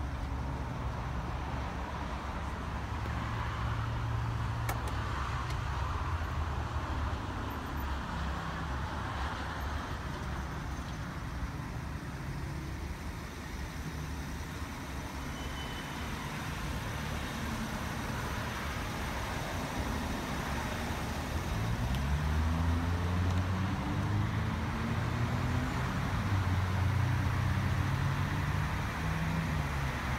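Vehicle and traffic noise: a steady low rumble throughout, with an engine rising in pitch twice in the last third, as a vehicle accelerates.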